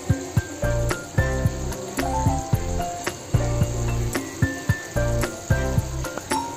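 Background music with a steady beat: a repeating low bass line under short, bright melody notes.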